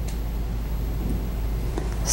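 Steady low hum with a faint, thin high whine above it: the background noise of the recording, with no other distinct sound.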